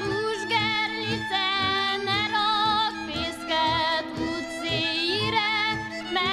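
A woman singing a Hungarian folk song with a wavering, vibrato-rich voice over a steady accompanying beat.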